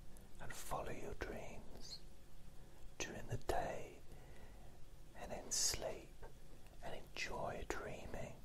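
Soft whispered speech close to the microphone: short whispered phrases with hissing sibilants and brief pauses between them.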